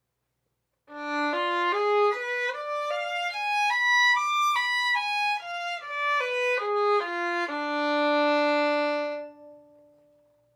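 Solo violin playing a two-octave diminished seventh arpeggio of E-flat minor starting on D (D, F, A-flat, C-flat), evenly paced notes bowed one at a time up to the top D and back down. It ends on a held low D that rings briefly after the bow stops.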